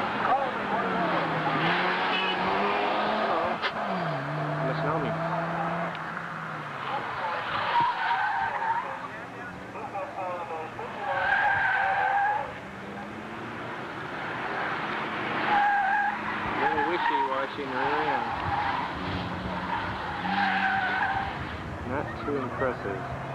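1986 Mazda RX-7's rotary engine revving up and down as it is driven hard through an autocross course, with the tyres squealing about four times in the turns, each squeal lasting a second or so.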